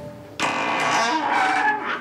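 A wooden door swinging shut, its hinges giving a long creak that starts about half a second in and lasts well over a second.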